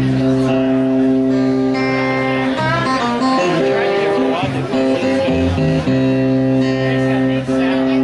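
Live blues guitar: long held notes over a steady low drone, with notes sliding up and down in pitch about three seconds in before settling back into sustained tones.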